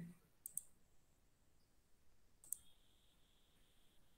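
Near silence, broken by a few faint sharp clicks, a pair about half a second in and one about two and a half seconds in; a faint high steady tone begins just after the later click.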